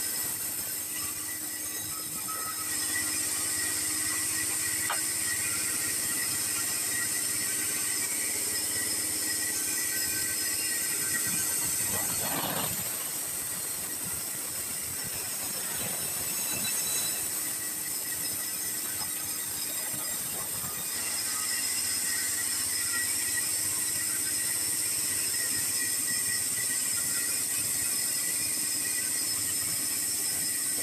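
Vertical band sawmill slicing a weathered sengon log into boards: the blade runs with a steady high-pitched squealing whine over a hiss of cutting. It gets louder about three seconds in, eases off around twelve seconds, and rises again about twenty-one seconds in.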